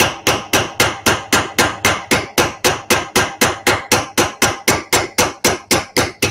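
Hammer striking a diamond-point chisel on metal held in a bench vice, cutting a V groove: a steady run of rapid blows, about five a second, each ringing briefly.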